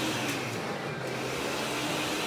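Steady indoor ventilation noise, an even hiss with a faint low hum, as from a shop's air conditioning.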